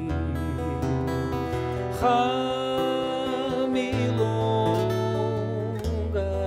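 Steel-string acoustic guitar playing a milonga accompaniment by hand, with a held, wavering melody line over steady low bass notes and a fresh strong note about two seconds in.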